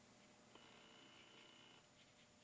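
Near silence: room tone, with a faint thin high tone lasting about a second, starting about half a second in.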